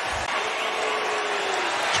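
Stadium crowd noise from a large football crowd, a steady din with a brief low thump at the very start.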